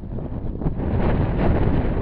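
Wind buffeting the camera's microphone: a loud, low rumble that gusts up about a second in.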